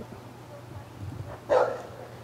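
A dog barks once, about one and a half seconds in, over a faint low steady hum.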